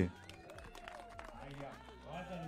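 Faint voices of people talking in the background at an outdoor gathering, well below the level of the amplified speech.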